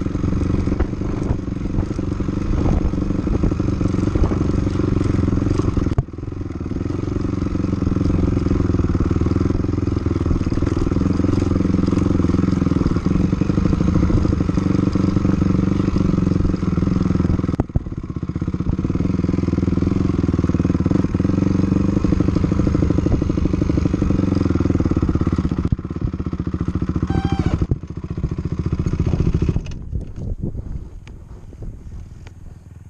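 Dirt bike engine running under way as the bike is ridden along a dirt trail. The sound is steady, with two brief sudden drops in level.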